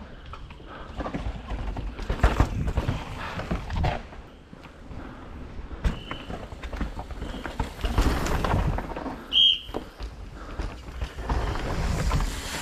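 Downhill mountain bike ridden hard over a rough dirt and root trail: tyre noise with repeated knocks and rattles from the bike, louder in two stretches and easing off in between.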